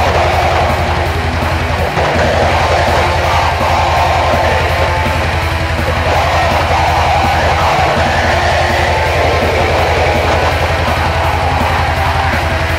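Black metal recording: a dense wall of distorted guitars over fast, even kick-drum strokes. The drums drop out briefly about two seconds in and again near eight seconds.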